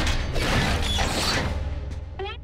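Metal wall plating being wrenched and torn open: grinding, creaking metal over a deep rumble, tapering off near the end.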